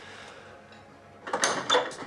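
Quiet room tone, then a little over a second in a short, louder clatter of knocks and rattles.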